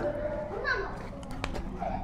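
Faint children's voices in the background, with a single light click about one and a half seconds in.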